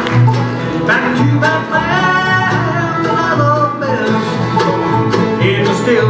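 Live bluegrass band playing: fiddle, mandolin, acoustic guitar, five-string banjo and upright bass together, over a steady bass pulse.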